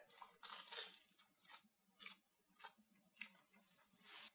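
Faint crunching of a bite into a deep-fried battered burrito and chewing of its crisp batter: a few short crackles at irregular spacing.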